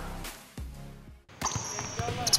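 Held music chords fade away to a brief near-silence, then a basketball bounces on a hardwood gym floor, with a couple of sharp knocks and a high squeak, about a second and a half in.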